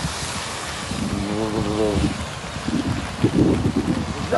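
Steady rushing noise of wind and heavy rain from a cyclone storm, with wind buffeting the microphone. A voice speaks briefly about a second in.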